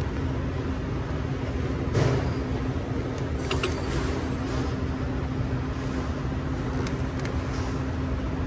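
Hand tools working on the battery hold-down hardware in a car's engine bay: a knock about two seconds in, then a few light metallic clinks, over a steady low background hum.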